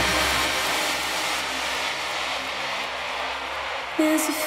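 Electronic noise sweep in a dance mix with the kick drum and bass cut out, its high end gradually closing down as it fades, over faint sustained synth tones. It is a breakdown transition between techno tracks.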